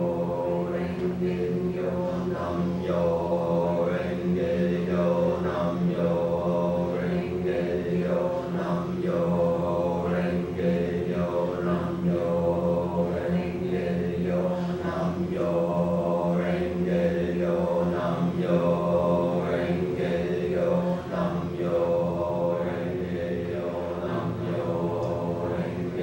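Sustained vocal chant held on one steady low pitch, the drone unbroken while its vowel sounds shift every second or two.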